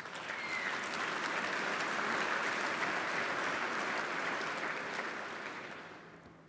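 Audience applauding, building up over the first second, holding steady, then tapering off near the end.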